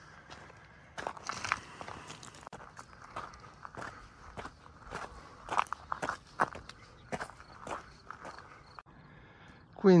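Footsteps crunching along a gravel hill trail, about two steps a second, at a steady walking pace.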